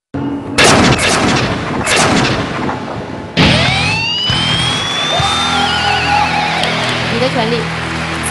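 Game-show stage sound effects for the light-off vote: several booming hits in the first two seconds, each marking a light being switched off. About three and a half seconds in comes a sudden electronic sting, with rising synth sweeps over a low held chord; one tone wavers as it falls.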